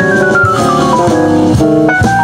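Yamaha Motif ES8 synthesizer played with an organ sound in a jazz keyboard solo: a quick run of notes falls in pitch over the first second or so against held chords.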